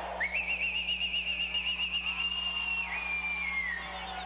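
A whistle blown in one long high note: a fast warbling trill for about two seconds, then held steady, then falling off and stopping near the end.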